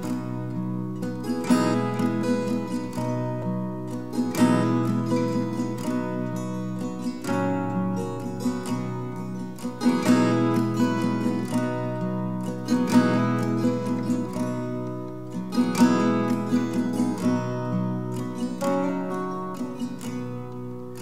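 Two acoustic guitars playing the song's instrumental introduction: picked and strummed chords ringing out, with a fresh attack every second or two.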